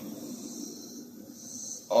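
Quiet woodland ambience: a faint, steady high chirring of crickets, over a low rustle.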